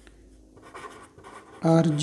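Pen scratching on paper in short faint strokes as a symbol and letters are written. A man's voice speaks one syllable near the end.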